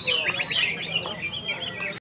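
Small birds chirping, many short quick calls overlapping one another throughout.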